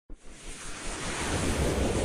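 A swelling whoosh of noise over a low rumble, building steadily louder from near silence: the opening sound effect of an animated title sequence.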